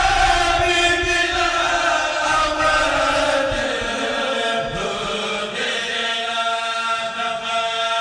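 A kourel, a choir of men, chanting a Mouride khassida (Sufi religious poem) in unison. The voices hold long notes; the pitch glides down about halfway through, and the notes are then held steady.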